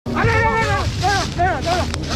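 A person's voice calling out: one long held call, then three short rising-and-falling cries, over a steady low hum, with a sharp click near the end.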